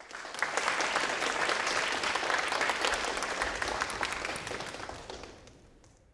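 Audience applauding: a dense clatter of many hands clapping that starts suddenly and fades away over the last second or so.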